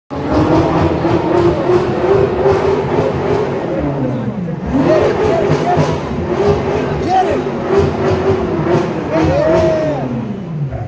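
BMW M6 Gran Coupe's twin-turbo V8 running and revving. Its note dips about halfway through, climbs again, and dips once more near the end. People shout and whoop over it.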